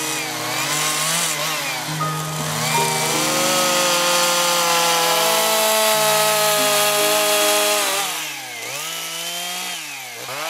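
Husqvarna two-stroke chainsaw carving into a wooden sculpture, held at high revs, its pitch dipping and climbing back as the throttle is eased and opened, near the end and again at the close. Soft sustained music plays underneath.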